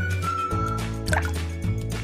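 Light instrumental background music with a steady bass line and a held melody. About a second in, a short water-drop 'bloop' sound glides in pitch.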